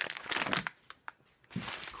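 Crinkling of plastic snack wrappers being handled, in two short spells with a pause of about a second between.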